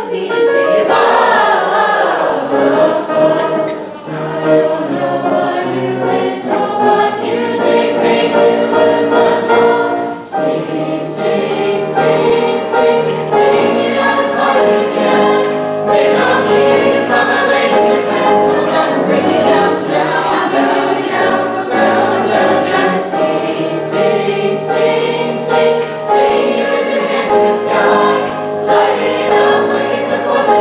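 A mixed-voice choir of girls and boys singing together in parts, accompanied by a grand piano.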